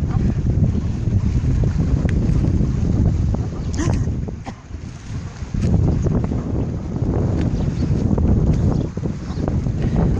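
Wind buffeting a phone's microphone, a continuous low rumble with a short lull about halfway through.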